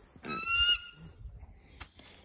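A bird of prey calling once: a high, slightly rising whistled call about half a second long.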